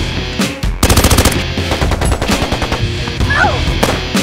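Rapid automatic gunfire, a fast burst of shots beginning about a second in and loudest there, over a driving music track.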